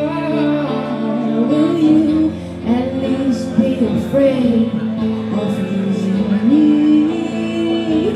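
Live song: a woman singing a slow melody into a microphone over electric guitar accompaniment.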